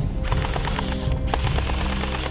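Electric gel blaster firing on full auto, a rapid clatter of shots in two bursts with a short break between them.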